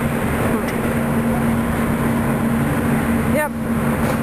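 A steady low mechanical hum over a constant rush of noise, with a single spoken word near the end.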